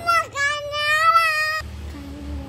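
A small child singing: a short first syllable, then one long high note held for about a second and a half that stops cleanly.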